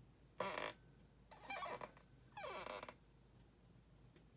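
Three short squeaks of something rubbed across a dry-erase whiteboard, the last falling in pitch.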